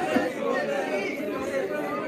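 A congregation praying aloud at once, many voices overlapping in an indistinct murmur.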